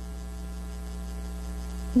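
Steady electrical mains hum with a faint buzz, unchanging throughout.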